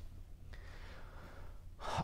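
A man's soft breathing in a pause between sentences, faint, with a steady low hum underneath.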